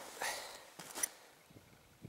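Handling noise of a handheld camera being turned around: a soft rustle, then a single sharp click about a second in, after which it fades to quiet.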